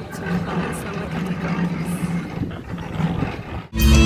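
Outdoor festival background of voices over a steady low drone. Near the end it cuts abruptly to loud live metal music with electric guitars and drums, from a band on the festival's main stage.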